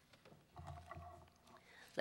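Quiet room tone through a lectern microphone, with a few faint clicks and a brief faint low murmur about halfway through.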